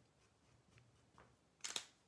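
Near silence: room tone, broken about one and a half seconds in by one brief soft sound.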